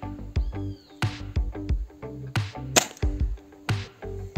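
Background music with a steady beat, and about three-quarters of the way in a single sharp crack from a gas-ram-powered CBC Expresso 345 air rifle firing a pellet through a chronograph.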